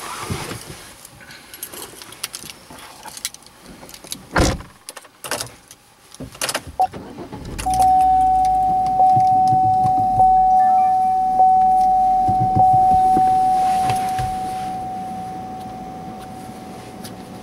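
Handling noises in a car: rustling, a few knocks and keys jangling. About halfway through, the car's warning chime starts dinging steadily, roughly once a second, each ding ringing into the next, over a low rumble.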